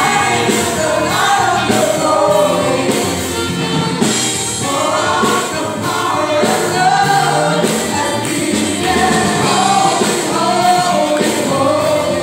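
A gospel worship group singing together in harmony over keyboard and band accompaniment, amplified through PA speakers in a hall.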